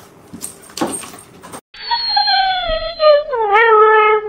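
A dog whining in long, high, wavering cries that slide down in pitch while it pulls at its quilt, which it thinks is being taken away. Before the whining begins there are a second and a half of soft rustling and a couple of knocks.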